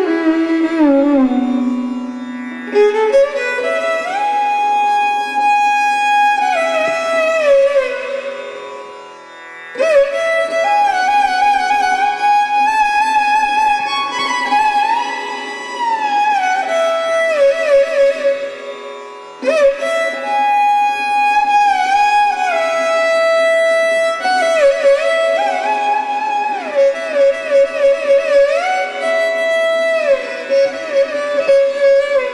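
Carnatic violin playing raga Begada: long phrases of notes that slide and waver between pitches, over a steady drone. The playing fades to a soft pause twice, and a new phrase enters sharply about ten and again about nineteen seconds in.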